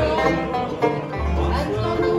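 A bluegrass band playing acoustically: banjo and mandolin picking with acoustic guitar, over upright double bass notes.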